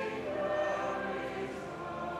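Mixed church choir singing, holding sustained chords that move to new notes about a quarter of a second in and again near the end.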